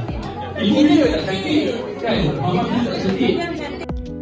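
Many people talking and calling out over each other in a large room: crowd chatter.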